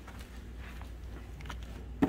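Quiet room with a steady low hum and a few faint clicks and rustles from handling and moving around.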